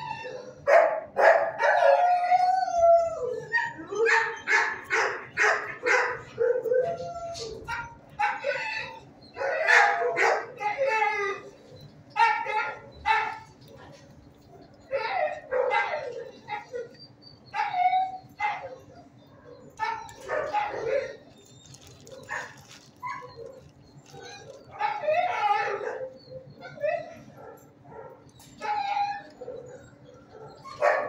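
Dogs barking over and over, short barks coming about every half second to a second, sometimes in quick runs of several, over a steady low hum.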